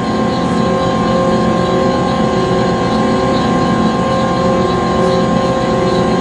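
Conveyor belt machinery running steadily: a continuous mechanical hum with several steady tones over a fine, even rattle.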